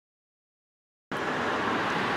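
Silence, then about a second in a steady background rumble and hiss starts abruptly.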